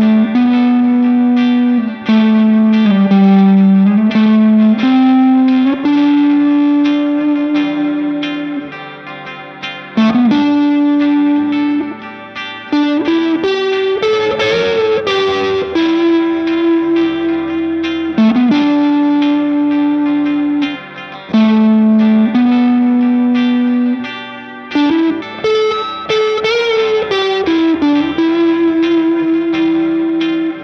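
PRS SE DGT electric guitar with twin humbuckers, played through an overdrive pedal, reverb and slapback echo into a tube amp. It plays a melodic lead of long sustained notes, some slid or bent into, with vibrato on held notes about halfway through and again near the end.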